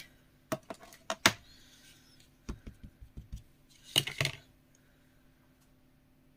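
Clear acrylic stamping block and stamp being handled on a craft mat: a few sharp clicks in the first second and a half, then a quick run of soft, dull taps, then a brief rattling clatter about four seconds in.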